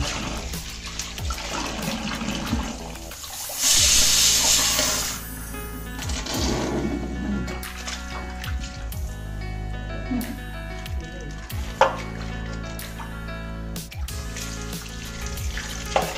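Tap water running into a steel vessel of small fish being rinsed, with a louder rush of water about four seconds in. Background music plays throughout.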